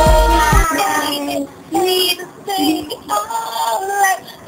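Pop song with a high voice singing; the bass and beat drop out less than a second in, leaving the sung melody in short phrases with brief gaps.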